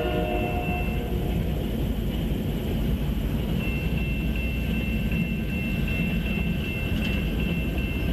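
Approaching CSX diesel freight train: its horn blast dies away in the first second, then a steady low rumble carries on. A thin, high, steady tone joins about three and a half seconds in.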